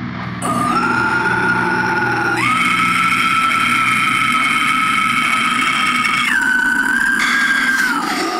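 Music from a deathcore track's build-up: a few long, high held tones, each stepping to a new pitch, over a low steady drone, with no drums.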